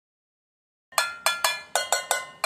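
Homemade agogô made of two tin cans, struck with a stick: five quick metallic strikes, each ringing briefly, starting about a second in.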